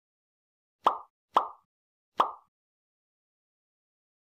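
Three short pop sound effects, each a sharp snap that dies away quickly, the second about half a second after the first and the third nearly a second later. They go with the Like, Comment and Subscribe icons popping onto an animated end card.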